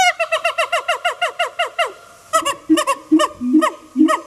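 Primate calls, high and pitched: a fast run of short falling notes, about seven a second, for the first two seconds, then slower falling calls with lower notes alongside.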